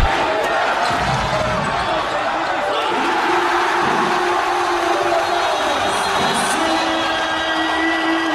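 Live basketball game sound in a packed arena: crowd noise with a ball bouncing on the court.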